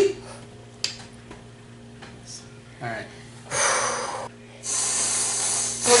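Aerosol whipped cream can spraying in two hissing bursts, a short one and then a longer one of more than a second.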